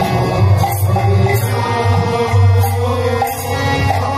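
Odia naam sankirtan: men chanting the Hari naam in chorus, with kartal hand cymbals clashing on a steady beat and a mridanga drum keeping time beneath.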